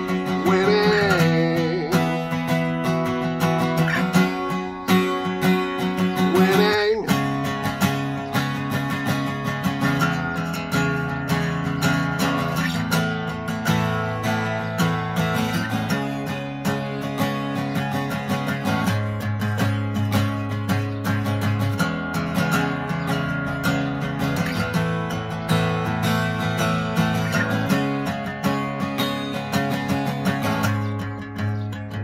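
Steel-string acoustic guitar strummed through a chord progression, the chord changing every few seconds, in an instrumental stretch between sung verses.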